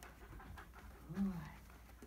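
Airedale terrier puppy panting faintly.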